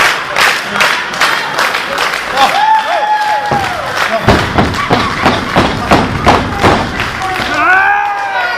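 Audience clapping in unison, a steady beat of about two to three claps a second, with a man's long shout about two and a half seconds in and more shouting near the end.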